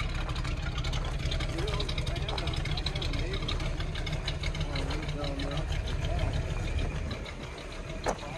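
Two men talking at a distance over a steady low rumble, which eases off near the end.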